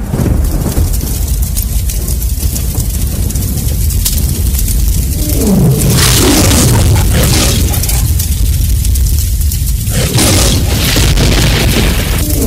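Recorded war sound effects played through stage loudspeakers: a heavy, continuous rumble of booms, then falling tones each followed by a loud blast, about six seconds in and again near ten seconds.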